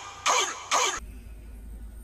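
Two short rasping bursts, then a cut to a low steady hum inside a truck cab.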